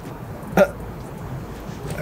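One short spoken syllable, a man or woman saying "all", over a steady low background hiss; otherwise no distinct sound.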